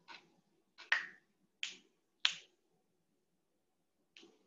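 Four short, sharp clicks or snaps, roughly two-thirds of a second apart, in the first two and a half seconds, each with a brief ringing tail.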